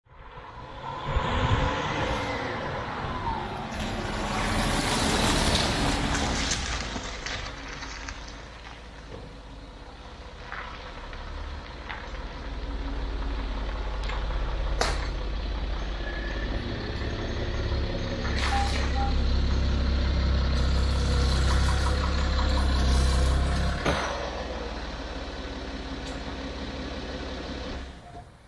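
A car engine running, with a steady low hum and a rising and falling pitch in the first few seconds. There are a few sharp knocks, about halfway through and near the end.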